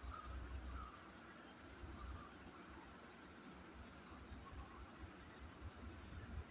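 An insect singing: a faint, steady, unbroken high-pitched song that runs on without pause.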